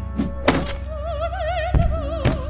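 An operatic soprano voice sings a held, wavering line over music, climbing slightly in pitch. Sudden thuds cut across it: a sharp hit about half a second in and a heavy low thump near the end.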